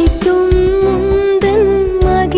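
Tamil Christian devotional song: a female voice holds one long, slightly wavering note over a steady beat of about two thumps a second.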